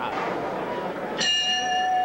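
Boxing ring bell struck once about a second in to start the first round, ringing on with a steady tone.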